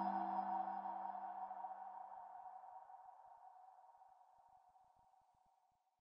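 Logo sting at the end of a video: one electronic chord, struck just before, ringing and fading steadily away. The lowest notes die out first, and the rest is gone about five seconds in.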